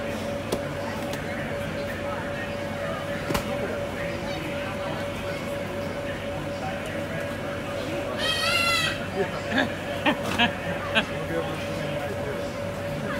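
Steady hum and air rush of an inflatable bounce house's blower. About eight seconds in, a child's short high, wavering squeal, followed by several sharp thumps.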